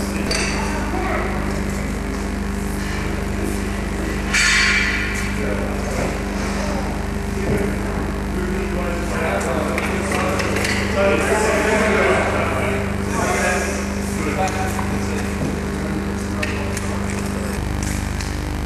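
Steady electrical hum under indistinct background voices and occasional knocks, with a short loud hiss about four seconds in.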